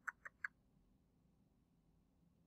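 Three quick computer mouse clicks in the first half second, then near silence.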